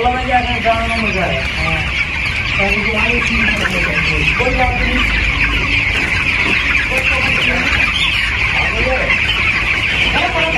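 A large flock of broiler chicks, about two weeks old, peeping continuously. Many short, high cheeps overlap into one steady chorus.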